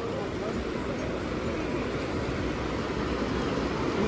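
Steady rush of ocean surf breaking on a sandy beach, an even wash of noise with faint voices beneath it.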